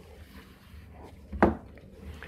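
A single short knock about one and a half seconds in, as a compact soundbar is set down on a wooden desk, with faint handling rustle around it.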